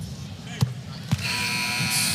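A basketball knocks twice, about half a second and a second in, as a free throw is taken. Then the arena crowd's cheer swells, with a steady held tone running through it.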